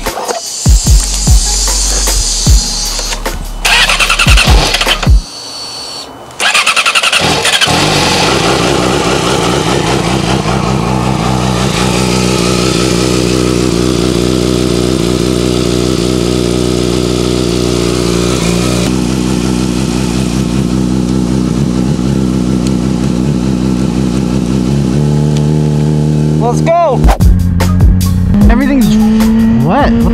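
Yamaha R6 sport bike's inline-four engine through an aftermarket slip-on exhaust, starting suddenly after a few seconds of thumps and rustling, then idling steadily. Near the end the revs rise as the bike pulls away.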